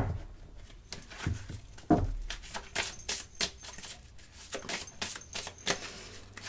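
A small deck of rune oracle cards being shuffled by hand: a run of light, irregular card clicks and flicks, with a soft knock about two seconds in.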